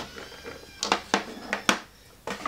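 Clear plastic craft packaging being handled: three sharp crinkling clicks in the second half.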